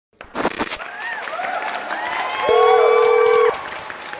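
Edited intro sound effects: a mix of gliding, whooping tones with a loud, steady beep of about a second in the middle. A faint high tone and a couple of clicks come near the start.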